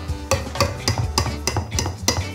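Metal beaters of an electric hand mixer knocking against a stainless steel bowl of whipped cream, a run of sharp clicks about three a second.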